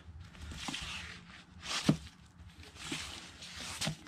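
Cardboard LP record sleeves sliding and scraping against each other as a hand flips through a box of vinyl records, with a couple of sharp taps as sleeves drop back, one about halfway and one near the end.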